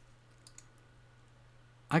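A faint computer mouse click about half a second in, over a low steady hum. A man starts speaking near the end.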